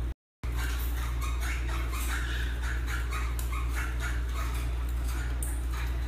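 Caged rosellas, an eastern and a crimson rosella, giving a run of short chattering calls for a few seconds over a steady low hum.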